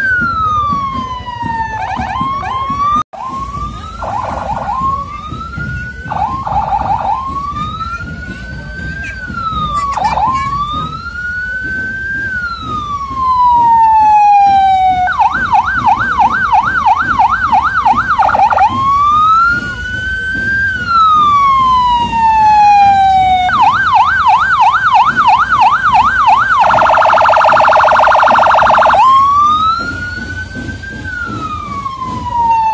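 Electronic police siren cycling through its modes: a slow wail rising and falling every few seconds, two spells of fast warbling yelp at about three warbles a second, and near the end a harsher buzzing tone before the wail comes back.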